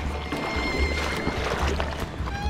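Background music: held notes over a low bass that pulses about once every 0.7 seconds.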